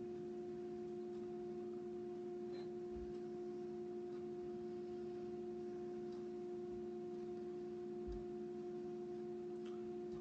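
A steady hum of fixed pitch, several constant tones together, with two faint low knocks, about three seconds in and about eight seconds in.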